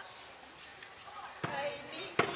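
Faint murmur, then about one and a half seconds in a single deep beat on a large hand drum, with voices starting up right after it.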